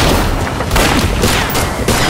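Handgun gunfire in a film shootout: many shots in quick succession, with deep booming underneath.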